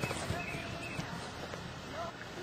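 Faint outdoor background noise from a camera microphone, with a few light knocks and faint distant voices.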